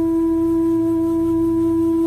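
Bansuri (Indian bamboo flute) holding one long note at a steady pitch over a low, steady drone, in slow meditative instrumental music.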